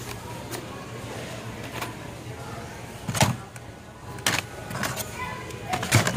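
Plastic blister-packed Hot Wheels cards clacking against one another and the bin as they are rummaged through: several sharp clacks, the loudest about three seconds in, over a steady low hum.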